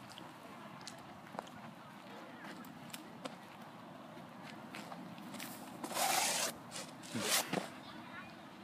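Quiet outdoor background with scattered faint scuffs and steps, then a short rustling scrape about six seconds in and another about a second later, from hands and shoes scraping at a slender tree trunk during a failed climb.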